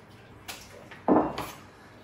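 Kitchen knife cutting through onion onto a plastic cutting board, the last cuts of the batch: a light tap about half a second in, then a louder chop about a second in.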